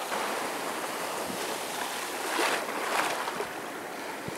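Small surf washing in at the shoreline, a steady rush of water that swells briefly a little past halfway.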